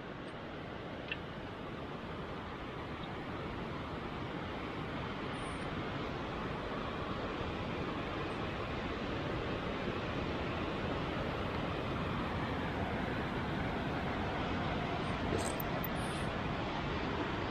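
Steady rushing background noise, slowly growing louder, with a faint click about a second in.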